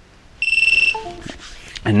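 A high electronic beep lasting about half a second, then a short falling two-note computer chime: the Windows device-disconnect sound as the flight controller reboots after its settings are saved and drops off USB.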